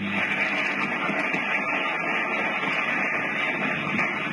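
Steady hiss and crackle of an early sound recording played back over loudspeakers, with a low hum under it and a few faint clicks.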